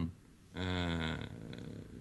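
A man's drawn-out hesitation sound "eh", held on one steady low pitch for about a second and then trailing off more quietly.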